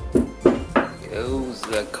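A wooden stick knocking on oven-baked coconut shells to crack them open: several sharp knocks, most of them in the first second.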